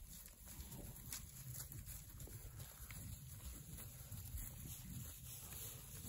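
Herd of cattle walking over dry grass: faint, irregular hoofsteps and rustling, over a low rumble.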